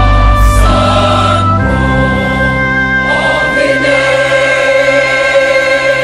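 Large mixed choir singing long held chords in harmony over a deep bass accompaniment, the chord changing about one and a half seconds in and again about three and a half seconds in.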